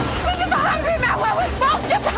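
Several people's voices, overlapping and unintelligible, over a low steady hum.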